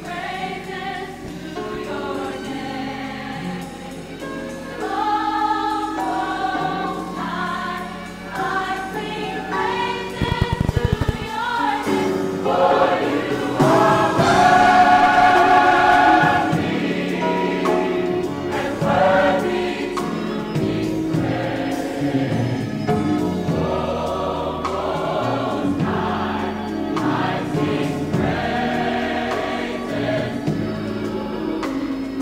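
Gospel choir singing a medley of praise songs, swelling loudest about halfway through.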